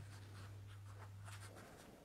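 Faint rustling and light scratching in a quiet room, over a steady low hum that cuts off near the end.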